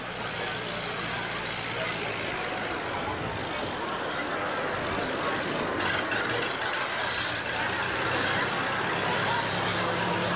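Model T Ford's four-cylinder engine running steadily as the stripped racer drives around the dirt track, slowly getting louder as it comes closer.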